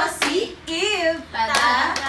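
Hands clapping in the rhythm of a hand-clapping game, while a woman sings the chant's next verse over the claps.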